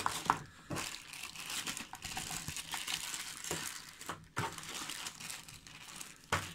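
Thin clear plastic packaging bags crinkling and rustling as they are handled, with a few sharper crackles; the loudest comes just after the start.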